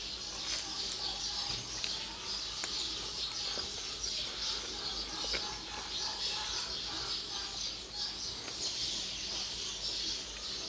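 Birds chirping steadily in the background, a dense high chatter, with a few light clicks scattered through it.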